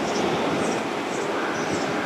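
205-series electric train running on the rails close by: a steady rumble of wheels and running gear.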